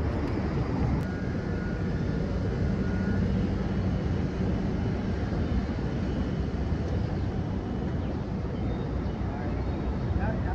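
Steady city street traffic: cars running along a multi-lane road, a continuous low rumble with no sudden events.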